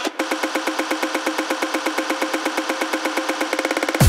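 Tech house build-up with the bass filtered out: a fast, evenly repeated percussive roll over a held tone, speeding up near the end into the drop.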